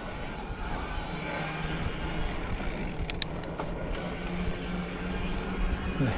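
Steady rushing wind and tyre noise from a bicycle riding on asphalt, with a steady low engine hum from a nearby motor vehicle setting in about a second in. A few short sharp clicks about three seconds in.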